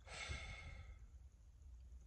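A man's soft sigh: one long breath out that starts at once and fades away within about a second.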